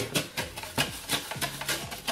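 A stiff brush scrubbing the inside of a protein skimmer's clear plastic body, in quick repeated strokes several times a second, loosening grime during a deep clean.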